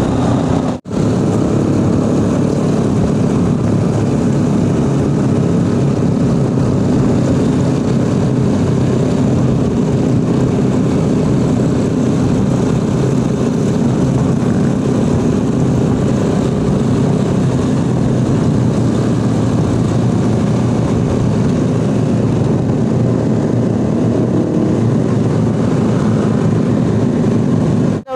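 Motor scooter engine running steadily under way, mixed with wind and road noise on the onboard microphone, with a brief dropout about a second in.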